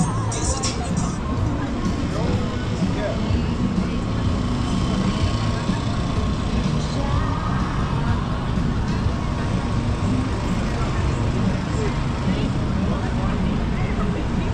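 Busy city street ambience: car traffic passing at a crossing, with the chatter of people walking by, at a steady level.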